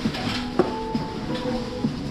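Busy indoor hall hubbub with a sharp clink about a third of the way in that rings briefly.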